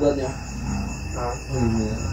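Crickets chirping steadily in the background, a fast even pulsing, with a faint voice briefly about a second in.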